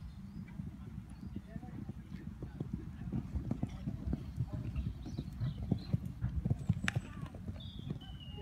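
Horse cantering on a sand arena, its hoofbeats growing louder through the middle and easing off near the end.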